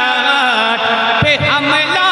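A man singing a naat, an Urdu devotional song in praise of the Prophet, solo into a microphone, holding long drawn-out notes that bend and turn in pitch.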